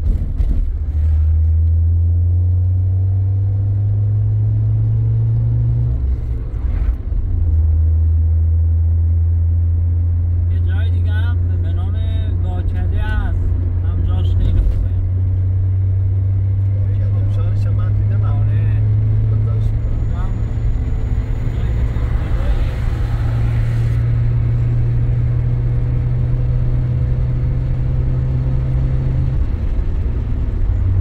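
Car engine and road noise heard from inside the moving car's cabin: a steady low engine drone whose pitch climbs as the car accelerates, drops back about six seconds in, then climbs again.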